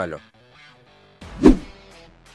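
Quiet background music, cut across about a second and a half in by a short swelling whoosh that ends in a loud low hit: a video-edit transition sound effect.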